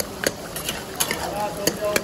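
Long metal ladle stirring mutton karahi in a black wok, clinking and scraping against the pan about every half second, over the steady sizzle of the gravy cooking over a wood fire.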